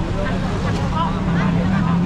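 Busy city street at night: engines of slow-moving traffic running steadily, with a crowd of people talking.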